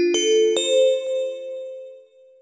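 A rising run of bell-like chime notes, struck one after another, the last about half a second in, then ringing on and fading away: a transition chime between sections.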